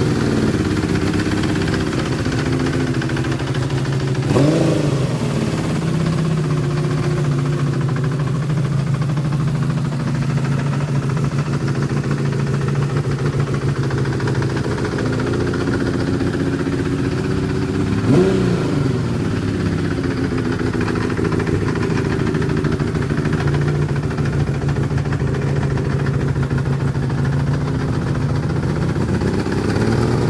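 Honda CBX's air-cooled inline-six engine idling steadily, blipped twice, briefly revving up and dropping back to idle, about four seconds in and again past the halfway point.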